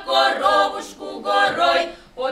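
A women's folk vocal quintet singing a Ural comic folk song a cappella in close harmony: two sung phrases, with a brief break between them about a second in.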